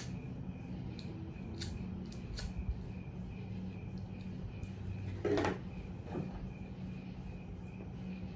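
A corncob pipe being lit: a few sharp clicks from the lighter in the first few seconds, then a short louder puff about five seconds in as the smoker draws on it. Under it all runs a steady low hum and a faint pulsing high chirp.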